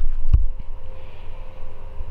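Low rumble with a single thump about a third of a second in: handling noise from a handheld camera being moved.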